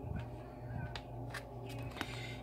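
Oracle cards being handled and laid down on a wooden surface: a few light clicks and taps of card stock, over a steady low hum.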